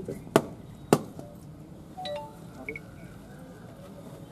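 Two sharp cracks about half a second apart within the first second: a coconut being struck against a hard surface to break it open as a ritual offering.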